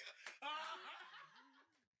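A person's laughter, faint and fading, dying out about three quarters of the way through.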